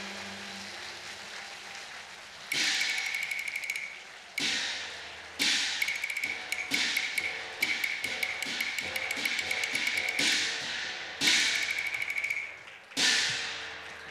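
Cantonese opera percussion playing the closing beats: a run of sudden metallic crashes from cymbals and gongs, each ringing and fading, over fast rolled strokes. It starts about two and a half seconds in, after the last music dies away, and the crashes repeat at uneven gaps.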